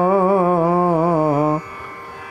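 A voice chanting a Sanskrit devotional verse, holding one long note that wavers in pitch and steps down, then breaking off about one and a half seconds in.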